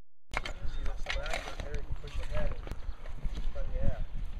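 A moment of silence, then several people talking indistinctly over an uneven low rumble, with scattered knocks.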